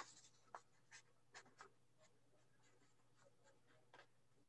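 Near silence: a low steady hum, with a soft click at the start and a few faint, short scratchy strokes of writing in the first two seconds.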